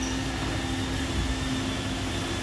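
iRobot Roomba e5 robot vacuum running across a tiled floor: a steady hum from its suction motor and brushes.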